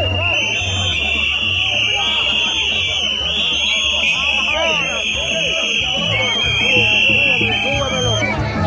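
Gagá band playing live: a shrill high tone sounding in long, slightly shifting blasts over a steady low drum beat and many voices.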